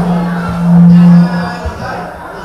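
A man's voice holding one long low note through a microphone over live band music. The note is loudest from about half a second to just over a second in, then stops sharply.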